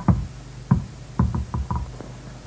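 A ping-pong ball struck with a table-tennis paddle, then bouncing on the table in a string of short, light knocks that come closer together toward the end.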